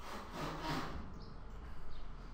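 Stylus rubbing across a tablet screen in a scratchy stroke lasting about a second, as it erases handwriting; a fainter rub follows near the end.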